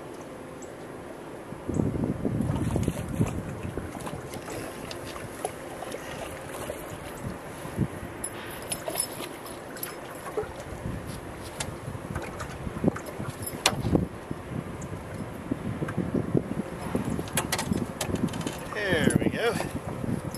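A hooked bass being fought and landed into a boat: wind on the microphone and water noise, with scattered sharp knocks and clicks on the boat as the fish is brought aboard.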